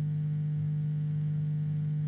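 Steady low electrical hum with fainter higher tones above it.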